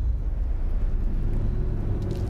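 Steady low rumbling drone from the film's soundtrack, with a few faint sustained low tones under it and no sudden sounds.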